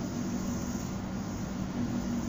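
Steady background hum and hiss of room noise, with no distinct event.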